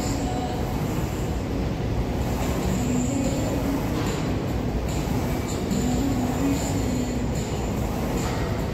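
Steady low rumble of background noise filling a large gym hall, with faint tones coming and going.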